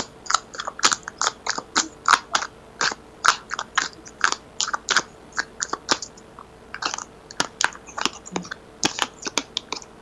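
Tarot cards being shuffled and handled: a quick, irregular run of short soft clicks and slaps, about three a second.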